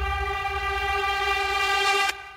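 A long held synthesizer chord in an electronic dance music mix, many notes sounding steadily together over a low bass.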